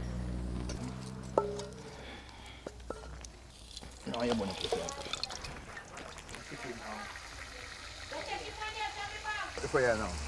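Indistinct voices talking in snatches over a faint steady hiss of chicken frying in oil on a coal stove. A low hum is heard in the first couple of seconds, with a sharp click about a second and a half in.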